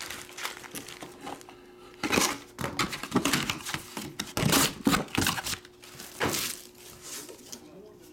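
Foil-wrapped trading card packs crinkling and rustling in irregular bursts as a stack of them is handled and set down on a table.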